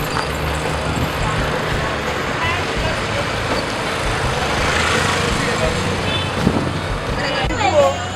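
Street traffic: engines hum, and a vehicle passes close, swelling and fading about four to six seconds in, over background voices.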